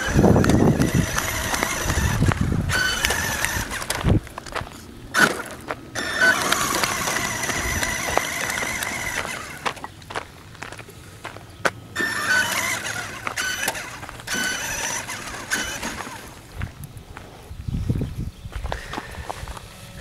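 Traxxas E-Revo electric RC monster truck driven in several bursts of a few seconds each, its motor whining under throttle with short pauses between runs, while running on a shredded tyre.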